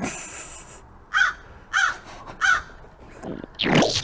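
Crow cawing three times, evenly spaced about two thirds of a second apart, after a brief hiss at the start: a comedy sound effect laid over an awkward pause.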